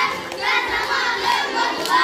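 A group of children voicing a line together in chorus, loud and in unison.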